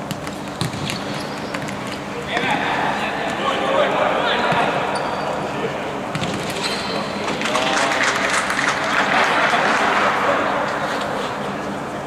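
Futsal ball kicks and bounces echoing in a sports hall, with players shouting. From about two seconds in the shouting grows, and from about seven and a half seconds there is a louder burst of shouting as a goal is scored.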